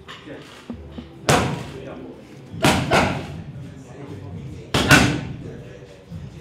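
Boxing gloves smacking as punches land on the opponent's gloves in a pad-and-defence drill: one sharp hit about a second in, then two quick one-two pairs.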